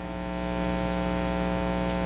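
Steady electrical mains hum: a buzz made of evenly spaced steady tones, unchanging throughout.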